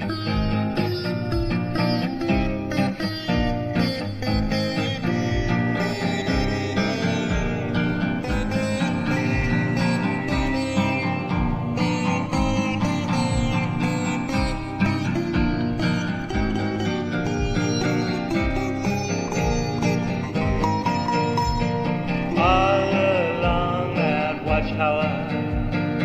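Acoustic guitar strummed in a steady rhythm with a melodic line played over it. About three-quarters of the way through, a line that bends up and down in pitch comes in over the strumming.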